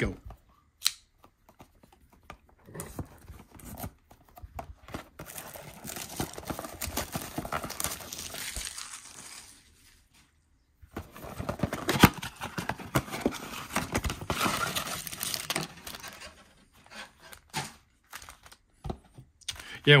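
Plastic shrink-wrap being torn and crinkled off cardboard trading-card blaster boxes, in two stretches of a few seconds each with a short pause between, full of sharp crackles.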